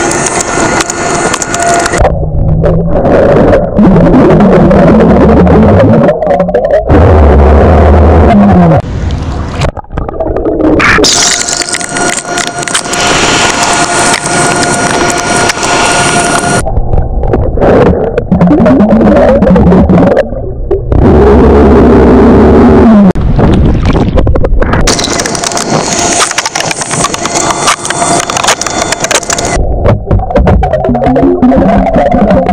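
A man drinking from a plastic bottle underwater and burping, recorded by an underwater camera. Gulping and bubbling alternate with several long, loud, low burps whose pitch wavers.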